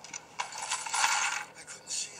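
Rattling, clicking clatter from a film soundtrack, played through a portable DVD player's small speaker. It starts with a click, swells to its loudest around the middle, and thins out towards the end.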